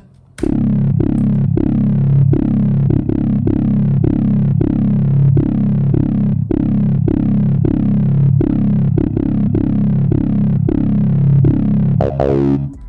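A Detroit-style bass line played on its own: a software bass instrument plucking short notes, about two to three a second, each dying away quickly, with its mids and highs boosted. It starts about half a second in.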